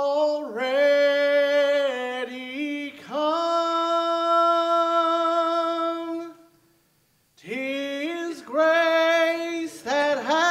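A man singing solo and unaccompanied into a microphone in long held notes, with a short pause for breath about six and a half seconds in.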